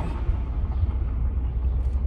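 Steady low rumble of a car on the move, heard from inside the cabin with the windows down: engine, tyre and wind noise.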